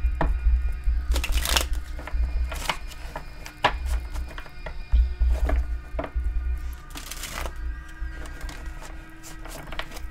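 Soft background music of steady held tones, with a tarot deck being shuffled by hand over it: irregular crisp clicks and riffles of the cards, the longest burst about seven seconds in.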